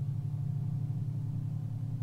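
A low, steady droning tone with a fast, even pulsing wobble and fainter higher tones above it, the kind of sustained drone laid under a guided meditation.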